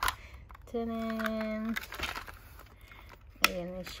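Hard clear plastic goggles case being twisted open and handled: a click as it opens, small plastic taps and rattles, and a sharp click about three and a half seconds in. About a second in, a woman's voice holds one steady note for about a second.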